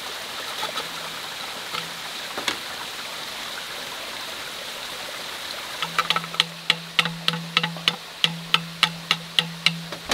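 A knife chopping at a green bamboo tube: a few scattered knocks early on, then from about six seconds in a quick regular run of sharp strikes, about three a second. Under it runs the steady rush of a stream.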